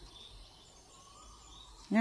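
Quiet outdoor ambience with faint, distant bird calls; a woman's voice begins near the end.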